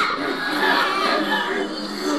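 Spooky Halloween sound-effects audio playing, a dense, continuous wash of eerie sound.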